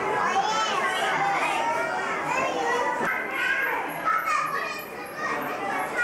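Several children talking and calling out over one another, high voices mixed with some adult speech, as in a busy public hall.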